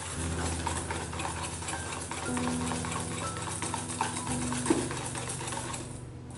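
Wire whisk beating a runny egg, sugar and melted-butter batter in a stainless steel bowl: a continuous fast scraping and clinking of the wires against the bowl through the liquid.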